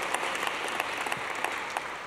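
Audience applauding in a large hall, the clapping slowly dying away toward the end.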